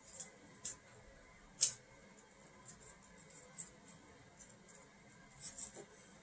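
Sporadic light clicks and rustles from handling paper mail packaging and trading cards, the sharpest about a second and a half in.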